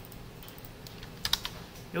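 Three or four quick clicks of computer keys in a tight cluster about a second and a quarter in, over faint room tone.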